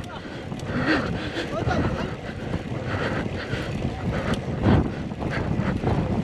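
Wind buffeting the microphone of a cyclist's camera during a hard, steep uphill effort, with the rider's heavy breathing coming in irregular gasps.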